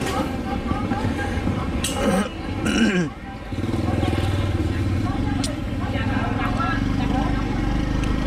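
A motorcycle engine running steadily close by, starting about three and a half seconds in, with people's voices before it.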